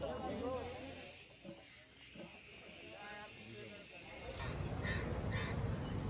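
Steady hiss of compressed gas escaping from an oxygen cylinder. It cuts off about three-quarters of the way through and gives way to a low rumble.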